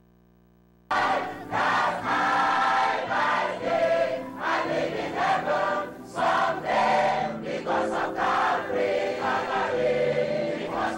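Large mixed choir singing a gospel song. The sound drops out to near silence for about the first second, then the singing comes back in.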